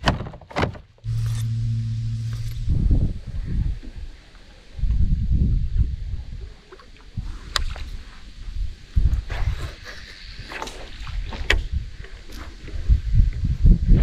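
Kayak being paddled and its gear handled: irregular knocks and bumps with low rumbling, and a few sharp clicks.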